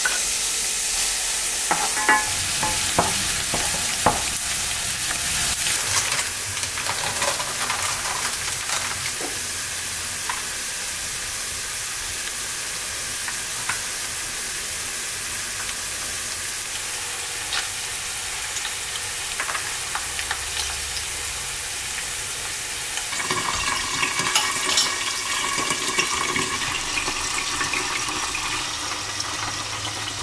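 Food frying in a nonstick pan with a steady sizzle. A wooden spatula taps against the pan several times in the first few seconds. Near the end, louder stirring and scraping in the pan.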